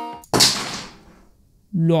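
Background song: a held sung note ends, then a single sharp crash-like hit fades away over about a second. A voice comes in near the end.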